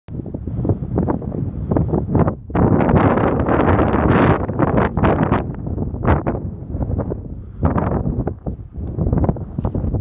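Wind buffeting the microphone in uneven gusts, with a sustained loud stretch about three to four seconds in.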